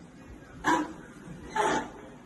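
A dog barking twice, two short barks just under a second apart.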